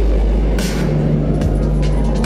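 Loud dubstep played through a festival sound system: a heavy held sub-bass with short, sharp noisy hits over it, heard from within the crowd.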